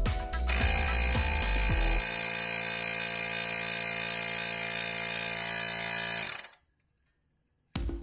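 Handheld electric tyre inflator running steadily as it pumps up a bicycle tyre, under background music for the first couple of seconds, then on its own; it stops suddenly about six and a half seconds in.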